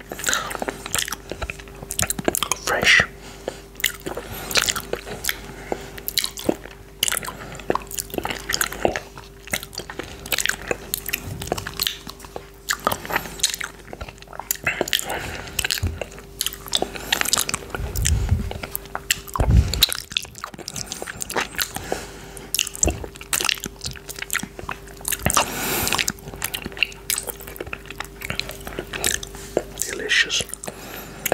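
Close-miked wet mouth sounds of coconut yogurt being licked and sucked off fingers: irregular lip smacks, clicks and slurps, over a faint steady hum. A few low thumps come about two-thirds of the way through.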